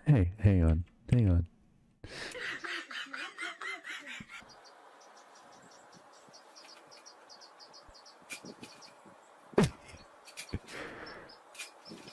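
Two brief loud vocal sounds at the start. Then a cat chattering at the window in a rapid pulsing trill for a couple of seconds, followed by faint high chirps and the clicking and clatter of window-blind slats being pawed.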